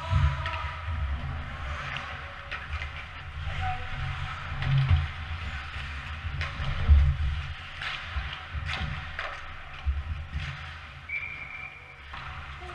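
Ice hockey game sounds heard from the players' bench: sticks clacking, a puck knocking on boards and skates on ice, over a low rink rumble with several heavier thumps. There are faint voices in the background, and a short steady high tone near the end.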